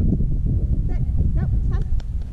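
A few short, high whines from a young Doberman mix, about a second in and again near the end, over a steady low rumble of wind on the microphone.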